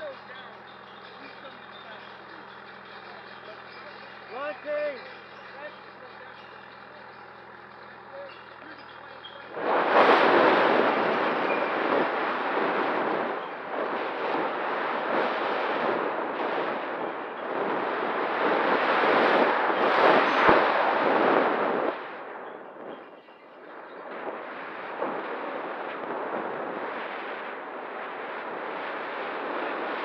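Wind rushing and buffeting over the microphone of a camera on board a model glider. It starts suddenly about ten seconds in as the glider is launched on its tow line and climbs, drops off briefly a little past the twenty-second mark, then goes on less strongly. Before the launch there is only a low steady hum.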